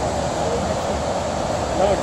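Steady rushing roar of the distant Iguaçu Falls waterfalls, even and unbroken, with a brief voice near the end.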